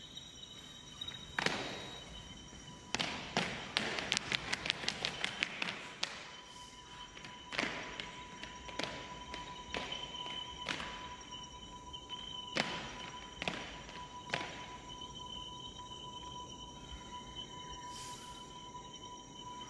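Army boots stamping on a hard stage floor in drill: a single stamp, then a rapid run of marching stamps, then single stamps about a second apart that stop near the end. Underneath runs a music track with two steady held tones.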